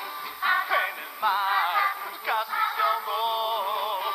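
A 1950s-style rock-and-roll song sung in Spanish over a band accompaniment, the voices holding long wavering notes.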